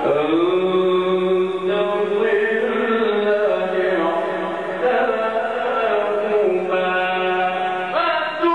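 A man reciting the Quran in the melodic, drawn-out Egyptian mujawwad style through a microphone, holding long notes with the pitch sliding and ornamented up and down.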